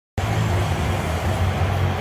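A steady engine rumble that starts abruptly and holds an even pitch.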